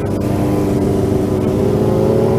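Yamaha XJ6's inline-four engine heard from the rider's seat, running steadily and slowly rising in pitch as the bike gains speed.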